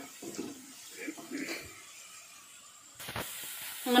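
Mostly quiet with faint voice traces, then about three seconds in a steady sizzle of chopped ginger frying in hot oil starts suddenly, with a single knock just after.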